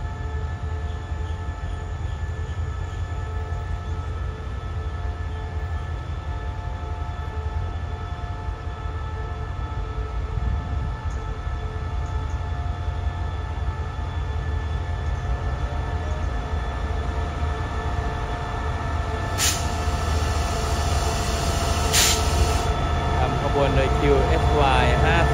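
SRT QSY-class diesel-electric locomotive running at slow speed as it hauls a passenger train into the station: a steady low engine rumble with a steady whine above it, getting louder near the end as the locomotive comes alongside. Two short sharp clicks sound late on.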